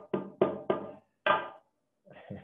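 A bicycle pump banged on a desk as a makeshift gavel: four sharp knocks, the last a little after a second in.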